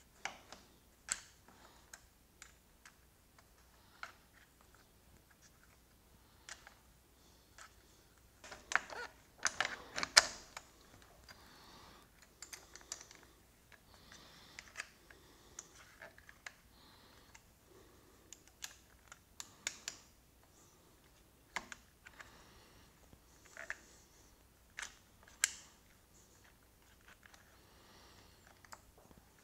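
Scattered light metal clicks and ticks of a hex key turning the screws of a Barkbusters VPS aluminium bracket clamp on a motorcycle handlebar, snugging the screws down. The clicks come irregularly, with a busier run about eight to ten seconds in.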